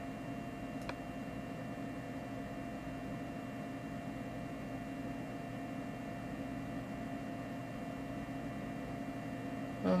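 Steady electrical hum and hiss of the recording's room tone, with a few faint steady tones and one faint click about a second in.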